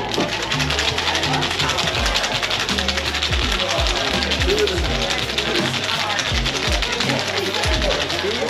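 Ice rattling rapidly and steadily inside a metal cocktail shaker as it is shaken hard by hand, over live piano jazz playing in the room.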